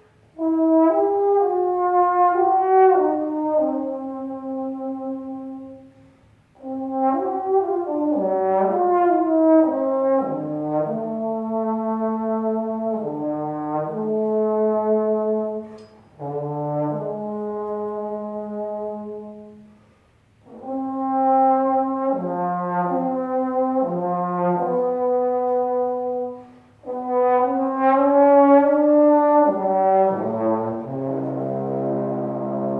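Trombone playing a single melodic line in phrases of several seconds. The phrases break off about four times for breaths, with near silence in between.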